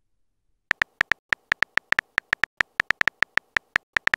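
On-screen keyboard typing clicks from a texting app: a rapid, slightly uneven run of short, high ticks, about five a second, as a message is typed letter by letter. The ticks start about a second in.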